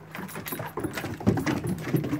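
Two dogs scuffling on a wooden deck: irregular taps and clatter of paws and claws on the boards, with collar tags jingling.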